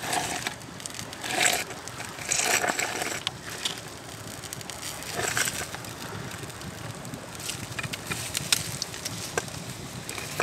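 Rustling and scraping as hands pull a smoked fish out of a stone fire pit across charred bark and dry grass, in several short bursts over the first five seconds or so. A few sharp crackles from the wood fire follow later.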